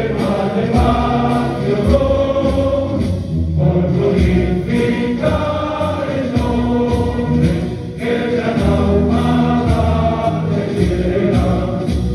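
A choir singing a slow religious hymn in long phrases of several seconds each, with brief breaths between them.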